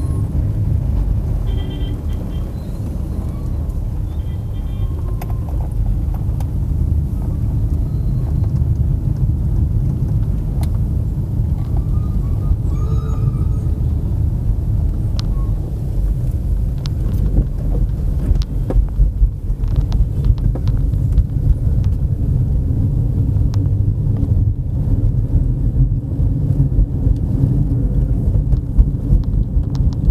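Steady low rumble of a car in motion heard from inside the cabin: engine and tyre road noise. A few short high beeps come in the first few seconds, and scattered sharp clicks in the second half.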